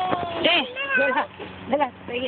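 A young child's high-pitched voice: several short, gliding cries and babbles with no clear words.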